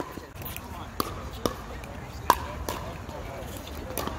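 Pickleball paddles striking the hollow plastic ball: several sharp pops at uneven intervals, the loudest a little past the middle, over background voices.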